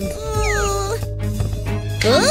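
A cartoon character's whiny, falling vocal cry, a whimper rather than words, over background music.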